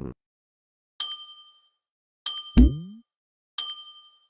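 Three bright chime dings from an added sound effect, spaced about a second and a quarter apart, each ringing briefly and dying away. The second ding is followed by a low tone that falls in pitch, ending in a thump.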